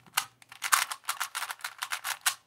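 A plastic 3x3 puzzle cube turned fast through a T-perm (a PLL algorithm): a quick run of clacking layer turns, about six a second.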